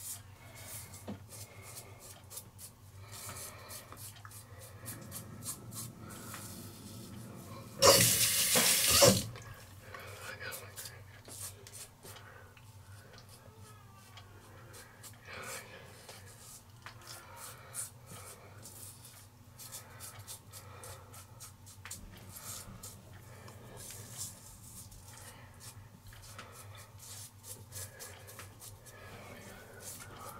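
Harry's five-blade cartridge razor scraping through stubble in short strokes. About eight seconds in, a faucet runs loudly for a little over a second as the razor is rinsed.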